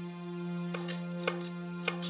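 Santoku knife chopping a red bell pepper on a wooden cutting board: about three sharp strikes roughly half a second apart, over a steady tone of soft background music.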